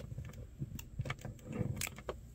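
Faint scattered clicks and rubbing of fingers on a plastic figure's energy-ball effect piece as a small plastic pull tab is drawn out to switch its light on. The sharpest click comes near the end.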